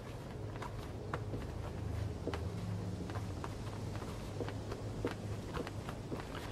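Faint rustling and scattered soft ticks of a shirt being unbuttoned and pulled open, over a steady low hum.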